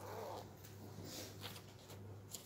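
Faint, steady low electrical hum from the church sound system, with soft paper rustling and a couple of light clicks as Bible pages are turned at a wooden pulpit.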